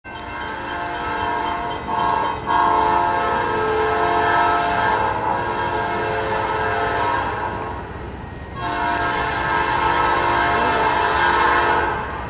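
Norfolk Southern diesel freight locomotive's multi-chime horn sounding in long blasts as the train approaches, with a brief break about two seconds in and a longer gap around eight seconds.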